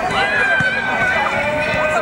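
Footballers' voices calling and shouting to each other across an outdoor training pitch during a passing drill, with drawn-out overlapping calls.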